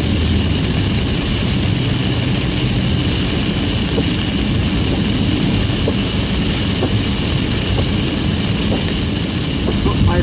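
Steady cabin noise of a car driving in heavy rain on a flooded road: a low engine and tyre rumble under the hiss of rain and spray on the car.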